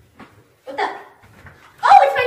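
A dog whining and barking: a short cry just under a second in, then a louder, higher one near the end.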